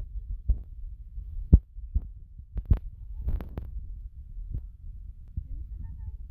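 Handling noise from a hand-held phone carried while walking: a low rumble with irregular soft thumps, about eight in six seconds, the loudest about one and a half seconds in.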